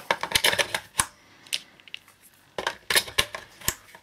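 AA nickel-metal hydride batteries clicking and rattling as they are pushed one by one into the spring-loaded slots of a Nitecore Digicharger D4 smart charger. There is a quick run of clicks at the start, single clicks about one and one and a half seconds in, and another run of clicks from about two and a half seconds in to near the end.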